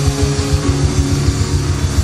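Live gospel band playing instrumentally: a fast, even kick-drum beat of about seven strokes a second under steady held chords.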